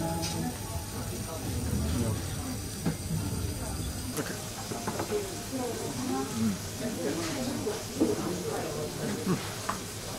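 Quiet, indistinct talking with a few light clicks.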